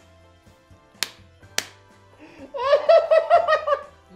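A person laughing in a quick run of high, pitched 'ha-ha' pulses that begins about two and a half seconds in and is the loudest sound. Two sharp clicks or slaps come before it, about a second in and half a second apart.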